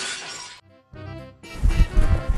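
A crash sound effect with shattering dies away in the first half-second. Then music starts, with a strong beat coming in about a second and a half in.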